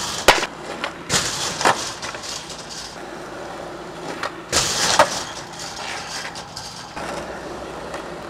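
Skateboard wheels rolling on concrete, with a sharp click just after the start and louder clattering impacts about a second in and again around five seconds.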